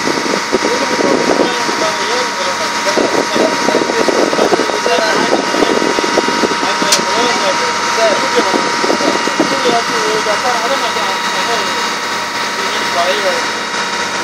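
A boat's engine running steadily, with a constant hum, under indistinct voices talking in the background.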